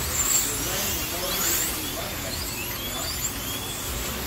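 Slot cars' small electric motors whining around a multi-lane track, several high-pitched whines rising and falling over and over as the cars speed up and slow down through the turns.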